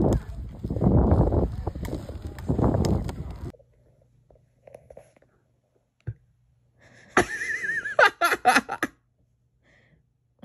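Wind buffeting the microphone in gusts for about three and a half seconds, cutting off suddenly. Near the end comes a high, wavering, whinny-like voice, breaking into a few short yelps.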